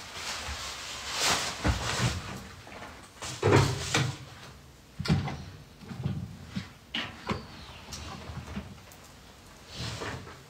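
Laundry being unloaded by hand from a top-loading washing machine: a string of separate knocks and bumps against the machine, with rustles of handled cloth.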